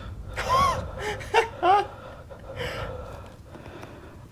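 A man's short, high-pitched gasps, four in quick succession in the first two seconds, each rising and falling in pitch.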